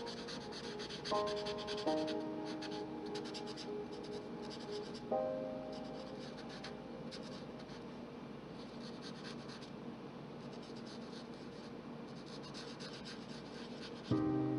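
Marker nib rubbing and scratching on paper in quick short strokes as an area is coloured in, with the strokes thinning out in the middle and picking up again near the end. Soft background music underneath, with a few held notes in the first five seconds.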